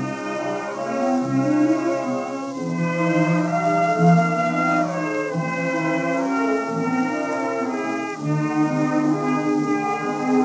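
Light orchestra, with brass among the instruments, playing a medley of tunes from a 1917 musical comedy, heard from an acoustically recorded 78 rpm shellac disc: there is no deep bass, and a faint steady surface hiss lies under the music.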